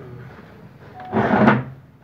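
Steel transmission parts sliding and scraping against each other as a forklift transmission's clutch drum assembly is handled on a steel bench, one rasping scrape about a second in.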